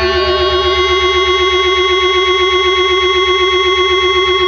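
Hardcore punk recording in an instrumental stretch: loud, held, distorted tones, one wavering quickly up and down, over a fast, even low pulse, with no vocals.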